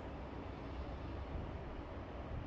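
Quiet, steady background noise with no distinct events: room tone.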